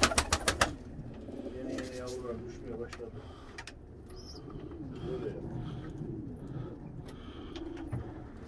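A flock of domestic pigeons cooing, low wavering coos overlapping throughout. A quick run of about seven sharp clicks opens it.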